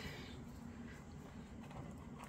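Quiet handling of craft materials on a tabletop: a few faint soft taps and rustles over a low steady room hum as a silicone mould is pressed onto plastic film and a marker is picked up.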